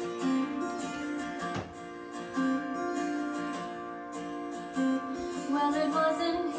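Acoustic guitar playing the intro of a recorded song, steady picked notes with a few strummed chords, played back over a speaker.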